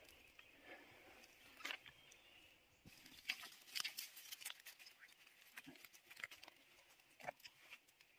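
Faint scattered clicks and light crackles of hands picking shiitake mushrooms off logs and handling them among dry leaf litter, busiest in the middle.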